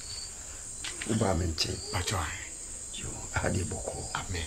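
Crickets chirping steadily, a continuous high night-insect background, with a man's voice coming in twice: a longer stretch about a second in and a short one near the end.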